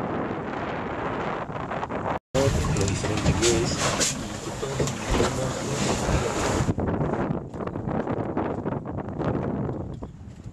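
Wind buffeting the microphone and water rushing past the hull of a sailboat under way. About two seconds in the sound cuts out for a moment, then a louder stretch of wind noise with faint voices follows before the steady wind and water noise returns near seven seconds in.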